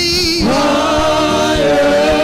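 Live gospel praise singing: a lead vocalist with backing singers, holding one long note that starts about half a second in.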